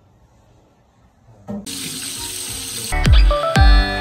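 Raw pork belly slices laid into hot oil in a wok start sizzling suddenly about a second and a half in, after a quiet start. Near the end, background music with deep falling bass notes comes in over the sizzle.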